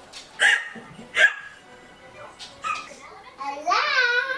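Two short bursts of laughter about half a second and a second in. Near the end a child's high voice squeals, rising in pitch.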